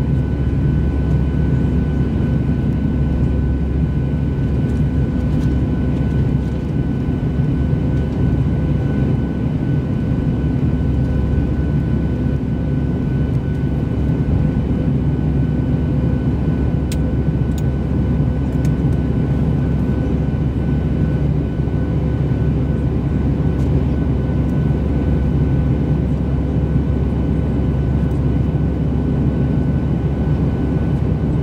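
Steady cabin noise of a Boeing 737-600 in flight, heard beside the wing: the low rumble of the CFM56-7B turbofan engines and airflow, with a few steady humming tones over it. A couple of faint ticks come about halfway through.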